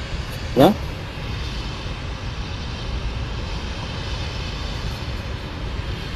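A steady low rumbling noise with a hiss above it, holding at an even level. A brief voice sound comes just after the start.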